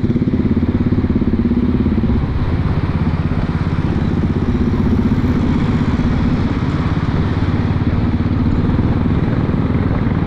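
Royal Enfield Classic 350's single-cylinder engine running steadily under way, heard from the rider's seat, with a rapid, even pulse.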